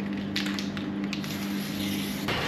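A steady low hum with a few short, wet squishing sounds on top.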